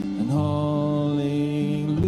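Live worship music: a man's voice holds one long sung note over two acoustic guitars, the note starting about a third of a second in and held steady through the rest.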